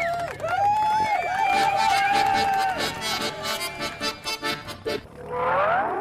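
Accordion music: long held notes, then a run of quick short notes, with a rising glide near the end.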